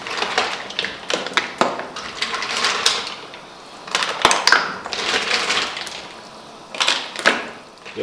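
Shells of mussels and clams clicking and clattering against each other, against a plastic bowl and against an aluminium stockpot as they are handled and arranged in the pot. The clicks come in an irregular run of sharp clicks and small clatters.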